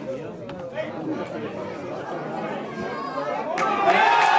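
Football spectators chatter at the sideline, then near the end a sudden loud burst of crowd shouting and cheering breaks out.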